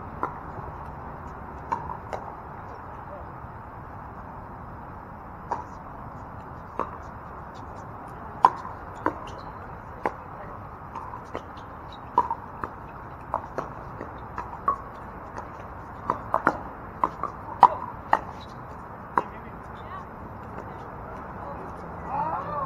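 Pickleball paddles hitting the hard plastic ball during a rally: a string of sharp pocks, about a second apart at first, coming quicker, several a second, later on.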